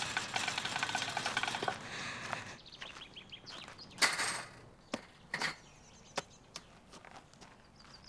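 Wire basket of baseballs rattling as it is carried, with footsteps on a dirt infield. About four seconds in, the basket is set down on the dirt with a short thud, followed by a few scattered footsteps and knocks.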